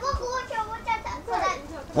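A small child's high-pitched voice babbling without clear words.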